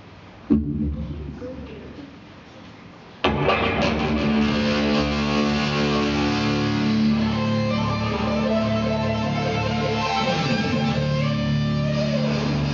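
An electric guitar strikes one chord about half a second in and lets it ring out. About three seconds in, the loud opening riff of a rock song starts suddenly on electric guitar and keeps going.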